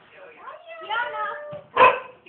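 A large dog gives one short, loud bark near the end, over voices.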